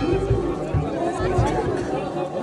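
People chattering over music with a fast, low beat that drops out about a second in.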